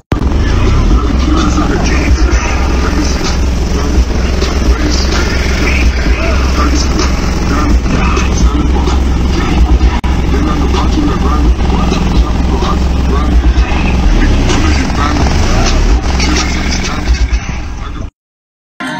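Car audio system played very loud, heavy sustained bass notes with a distorted, crackling mix on top, and voices over it.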